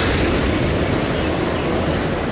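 Truck-mounted multiple rocket launcher firing a salvo: a loud, continuous rushing roar of rocket launches.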